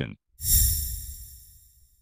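An edited-in impact sound effect: a sudden low boom with a bright, high ringing above it, fading away over about a second and a half.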